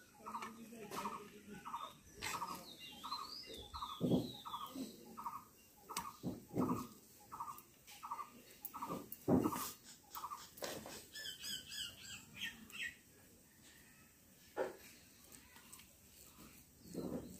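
A metal spatula knocking and scraping as cooked rice is dropped onto a steel plate, a few knocks louder than the rest. Behind it a short call repeats about twice a second for most of the time, with a few higher bird chirps near the end.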